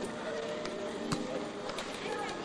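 Outdoor volleyball game: a murmur of players' voices with about three sharp slaps of the ball being hit.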